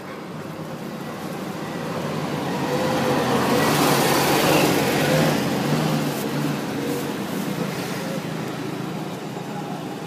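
A road vehicle driving past, its engine and tyre noise swelling to a peak about four to five seconds in and fading away again.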